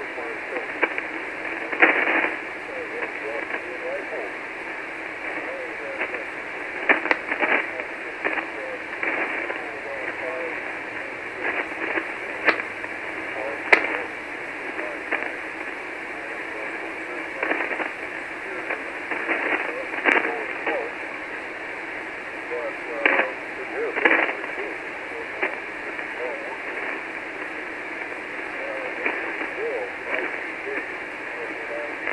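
A weak single-sideband voice on the 40 m band, barely readable under steady band hiss, comes through an Icom IC-706-series transceiver's speaker in a narrow, telephone-like band. Sharp clicks and crashes of static break in every few seconds.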